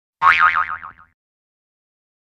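A cartoon-style 'boing' sound effect: one springy tone that warbles up and down about six times and fades out within a second.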